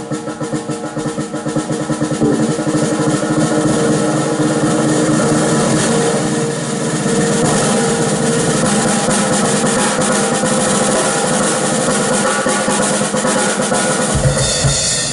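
Live band with a hollow-body electric guitar, double bass and drum kit: a drum roll builds in loudness over the first two seconds, then the band holds a loud, sustained passage with cymbals ringing over held chords.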